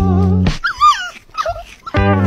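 A small puppy whimpering: a few high, wavering squeals about half a second in, then a short lower whine past the middle. Background music plays at the start and resumes at the end.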